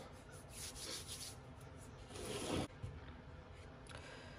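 Hands rubbing and smoothing glued fabric down onto a hardcover book cover: a few faint brushing strokes, the loudest about two seconds in.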